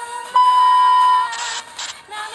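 A TV test-pattern tone: a loud, steady, high beep cuts in about a third of a second in and holds for about a second. It is followed by two short bursts of static hiss.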